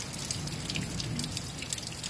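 Rain falling steadily during a thunderstorm, with water dripping close by in many sharp, separate drop ticks.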